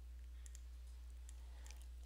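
A few faint computer mouse clicks over a steady low electrical hum from the recording microphone.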